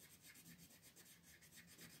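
Colored pencil shading on paper: the lead scratching in quick, even back-and-forth strokes. Faint.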